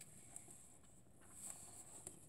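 Near silence: room tone, with one faint tick about a third of a second in.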